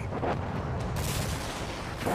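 Dense crackling rumble of many rapid small impacts, a sound effect for debris raining down on a city. A brighter hiss joins about halfway through.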